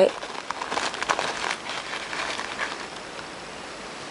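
Paper tea bag crinkling in the fingers as loose black tea leaves are shaken out of it onto a tabletop: a soft, irregular rustle with light crackles that fades out after about two and a half seconds.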